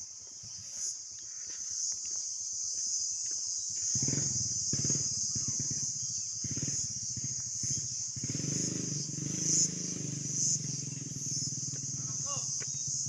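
A steady, high-pitched insect chorus drones throughout. A low rumble joins about four seconds in and carries on to the end.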